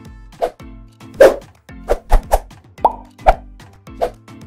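Background music overlaid with a run of about seven short, loud popping sound effects at uneven intervals, part of an edited transition stinger.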